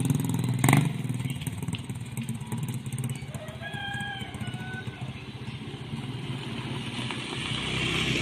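Small motorcycle engine running and fading as the bike rides away down the road, with a single knock about a second in. Near the end a scooter's engine grows louder as it comes close.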